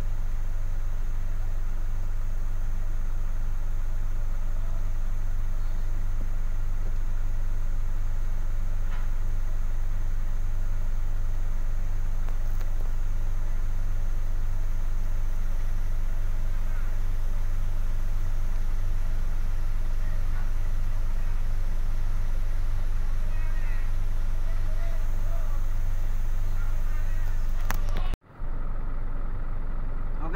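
Hino truck's diesel engine idling steadily, heard from inside the cab, with faint voices in the background toward the end.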